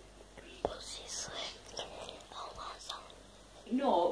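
A young child whispering close to the microphone, with one sharp handling click a little over half a second in; a voiced sound begins near the end.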